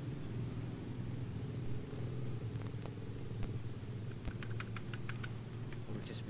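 A quick run of about eight computer-keyboard keystrokes about four seconds in, over a steady low hum.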